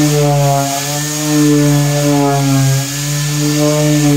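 Electric random-orbit sander running against a fibreglass boat cabin, a steady motor whine with a sanding hiss, its pitch wavering slightly and sagging briefly as the pad is pressed into the surface.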